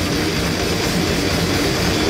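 Live grindcore band playing loud through a festival PA: distorted electric guitar and bass over dense drumming.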